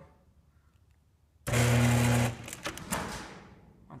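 Genie chain-drive garage door opener motor starting with a sudden loud hum about a second and a half in, running for under a second, then fading away over the next second and a half.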